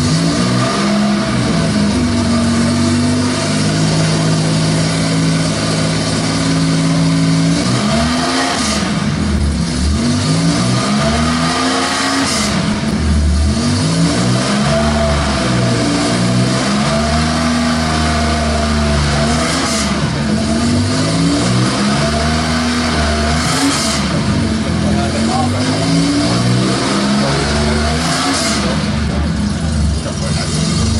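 Porsche 911 2.0's air-cooled Typ 901/01 flat-six running on the spot: held at a steady raised speed for a few seconds, then revved up and let fall over and over, every two seconds or so.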